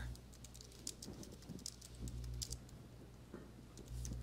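Faint, irregular keystrokes on a computer keyboard, typing a command into a terminal, over a low steady hum.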